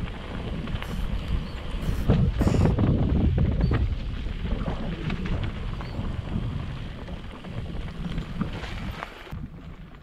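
Wind buffeting the microphone over the rumble of mountain-bike tyres rolling on a dry dirt trail, with scattered knocks and rattles from bumps; it eases off near the end.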